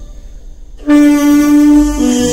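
Tenor saxophone comes in about a second in after a short pause and holds one long note.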